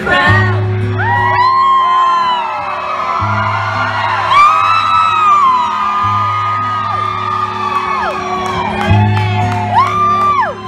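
Live band playing a country song while the crowd, heard from among the audience, whoops, shouts and sings along loudly over it, with held bass notes changing every few seconds underneath.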